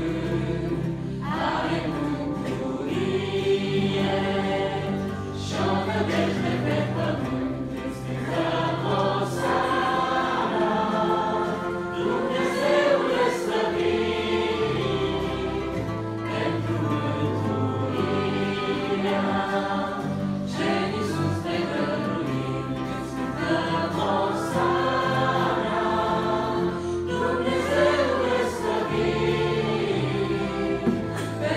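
A church congregation singing a Romanian hymn together, led from the front, over instrumental accompaniment whose sustained low notes change every few seconds.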